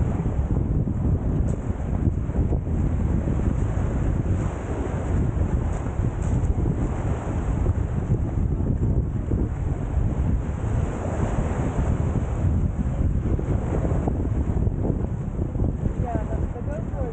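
Steady wind buffeting the microphone, a low rumbling noise, with small waves washing along the shoreline.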